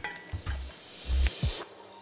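A slice of Spam sizzling in hot oil in a frying pan, a steady hiss that fades about a second and a half in.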